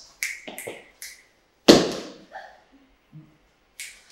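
A few light taps, then one loud, sharp knock a little under two seconds in, followed by a short room echo.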